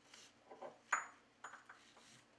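Small metal strap buckle clicking with a brief high ring as nylon webbing is worked through it, over soft rustling of the webbing. The sharpest click comes about a second in, a lighter one about half a second later.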